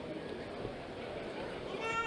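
Steady murmur of a crowd in a large hall, with a short, high shout from one person near the end, its pitch falling.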